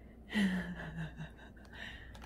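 A voice makes one breathy, drawn-out "uh" that falls in pitch, followed by a few faint clicks.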